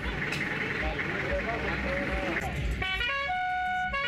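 A car horn sounding a short run of steady tones near the end, stepping through two or three pitches and holding the last note for about half a second, over background voices.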